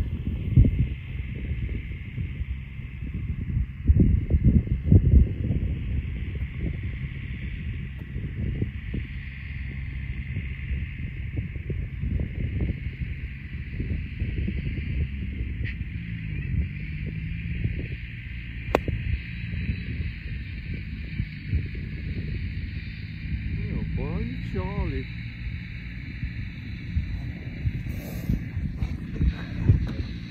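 Wind buffeting the microphone throughout, with a single sharp click a little past halfway: a wedge striking a golf ball, caught thin.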